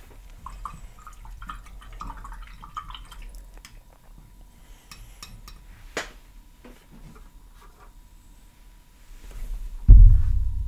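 Paintbrush being rinsed in a water jar: quiet swishing of water and light clinks of the brush against the glass, a sharper click about six seconds in, and a thump at the very end.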